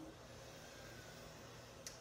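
Near silence: quiet room tone, with one faint click shortly before the end.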